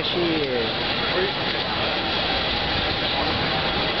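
Steady city street noise, an even hiss and rumble with no distinct events, after a brief word from a man at the start.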